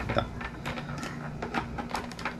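Small plastic clicks and scraping from a KYT motorcycle helmet's visor being worked onto its side mount and lock mechanism by hand, irregular and light.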